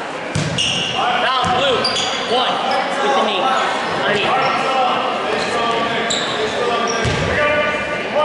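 Basketball game in a gymnasium during a stoppage: overlapping shouts and chatter from players and spectators, echoing in the hall. A basketball thumps on the hardwood floor three times, near the start, about a second and a half in, and near the end.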